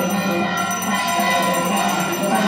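Temple bells ringing continuously over devotional music, the sound of an aarti (harathi) in progress.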